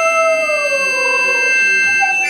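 Piano accordion holding a sustained chord of several steady notes, while a lower held note slides slowly down in pitch through the middle.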